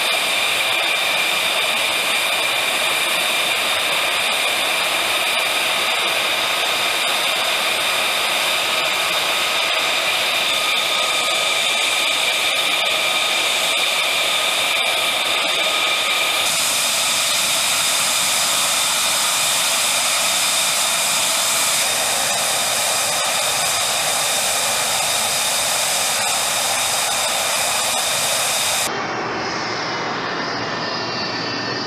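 An F-35's Pratt & Whitney F135 jet engine running at ground idle: a loud, steady high-pitched whine over a rushing roar. The sound shifts abruptly about halfway through and again just before the end.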